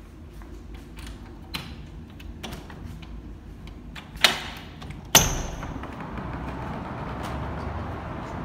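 A glass balcony door being opened: a few light clicks, then two sharp clacks about a second apart. A steady outdoor wash of distant traffic noise comes in once the door is open.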